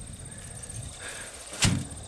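A cover board turned over by hand and dropped onto dry ground. It lands with one sharp thud about a second and a half in, after some low rustling as it is handled.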